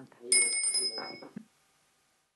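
A small bell struck once, ringing clearly and fading within about a second: the chair's bell marking that the committee session is closed. Low voices run under it.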